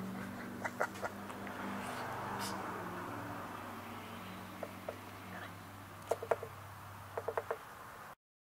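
Machine-shop room tone: a steady low electrical hum with a soft hiss, broken by small groups of short, light clicks, two near the start, then pairs and clusters of three or four toward the end.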